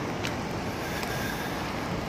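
Steady outdoor background rush with no pitched sound in it, and a faint click about a quarter of a second in.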